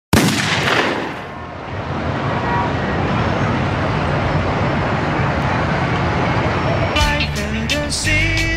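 Hip-hop song intro of city-street noise: a sudden loud blast at the very start that dies away over about a second, then a steady, dense wash of urban noise. About seven seconds in, the beat and a pitched melody come in.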